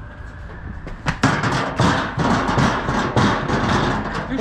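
A metal litter bin being shifted over stone paving: a loud, rough scraping rattle that starts about a second in and keeps going.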